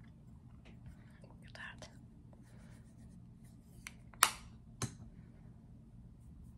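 Fingers rubbing and handling a powder highlighter compact, with soft scratchy rubbing throughout. A sharp click about four seconds in is the loudest sound, and a softer click follows just after.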